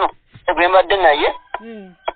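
A person's voice heard over a telephone line, sounding thin with the top cut off, in two short phrases. A steady electronic tone comes in about one and a half seconds in and holds.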